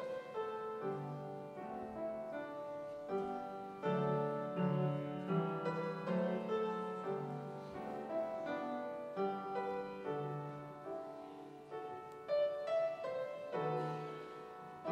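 Solo piano playing a slow, gentle passage, with notes and chords struck one after another and left ringing. No voices sing over it.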